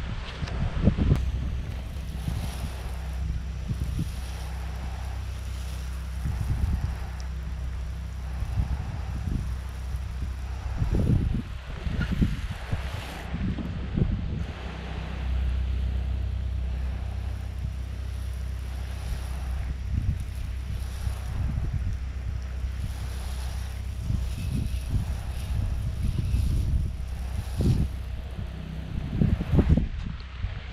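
Wind buffeting the microphone over the steady hiss of a soft-wash spray gun spraying bleach solution onto a tile roof. The hiss breaks off briefly about thirteen seconds in and again near the end.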